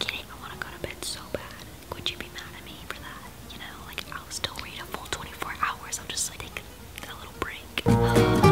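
A young woman speaking in a whisper: breathy speech with no voiced tone.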